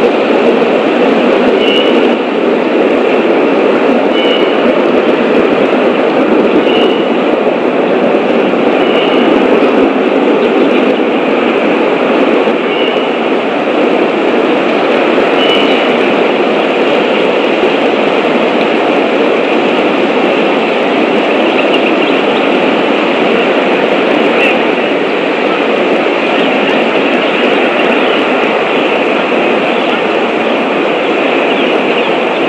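A loud, steady rumbling noise with no break. A short high chirp repeats every two to three seconds through the first half.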